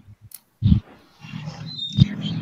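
Open microphone noise on a video call. A short muffled thump about half a second in, then a low rumbling, rustling noise with no clear words.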